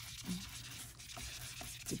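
Faint rubbing and rustling of paper as a hand wipes a foam ink blending tool clean on a sheet of scrap paper laid over cardstock, with a few small ticks.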